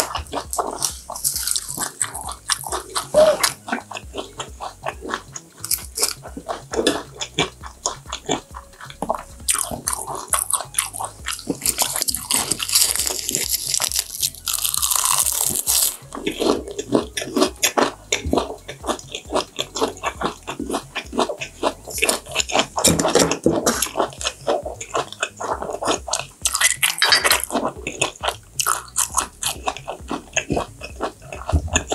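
Close-up chewing of raw yellowtail sashimi wrapped in roasted seaweed and lettuce, with many small wet clicks and crunches in quick succession.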